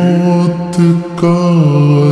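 A naat sung by a single voice, holding long steady notes with a step down in pitch near the end, slowed down with added reverb.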